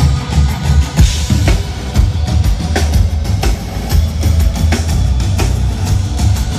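Rock band playing live through a big open-air stage PA during a soundcheck, heard from out in the grounds: drum kit hits stand out over heavy bass.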